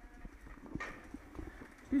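Irregular knocks and clicks, about two a second, from walking and pushing a shopping trolley over a tiled floor, with a man's voice starting at the very end.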